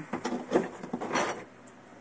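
Handling noise: a few light clicks and knocks with a short rustling scrape about a second in, as a cable bundle with metal jack plugs is picked up. It then goes quiet.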